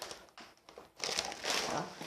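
Crinkling of a plastic snack-bag wrapper being handled and set down, faint at first and then a denser rustle through the second half.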